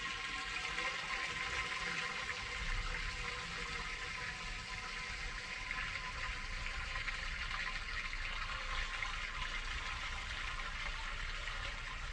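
Liquid running steadily down a ground drain.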